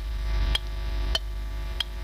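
Clock ticking: sharp, evenly spaced ticks, about three every two seconds, over a steady low hum.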